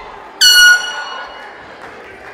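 A single short, loud horn blast about half a second in, signalling the end of an MMA round as the round clock runs out.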